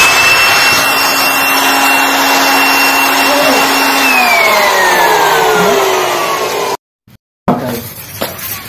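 A loud machine running with a steady whine over a rushing noise; about four seconds in, the whine starts falling steadily in pitch as the machine winds down, then the sound cuts off abruptly.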